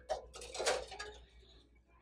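A few light knocks and clinks as decorative toy trucks are lifted off a shelf and set into a shopping cart, over the first second or so and then dying away.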